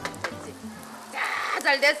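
A silchi pancake frying in oil in a frying pan, its sizzle rising briefly about a second in. Music fades out at the start, and a woman's voice is the loudest sound near the end.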